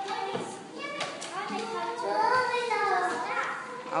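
Young children's voices: a child answering quietly, with other children murmuring.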